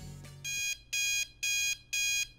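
Electronic alarm-clock-style beeping: an evenly repeating high beep, about two a second, starting about half a second in as the end of the preceding music fades out.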